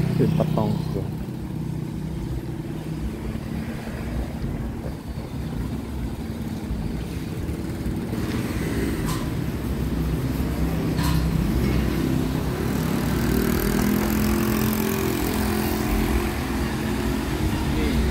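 Street traffic: motor vehicle engines running close by, a steady low engine hum that grows louder in the second half, with a few short clicks near the middle.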